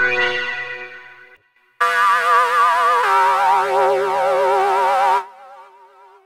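Access Virus C synthesizer patches played through the DSP56300 (Osirus) emulator. A note with shifting, sweeping overtones fades out in the first second and a half. After a short gap, a bright held tone with a wavering vibrato sounds for about three and a half seconds, stops abruptly, and leaves a fainter wavering tail.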